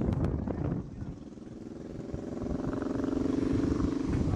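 An engine drone that starts about a second in and grows steadily louder, holding one pitch. Wind rumbles on the microphone at first.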